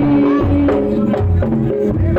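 Live Bantengan accompaniment music from a traditional East Javanese percussion ensemble: a deep drum beats steadily a little more than once a second under a held, sliding melody line, with rattling hand percussion.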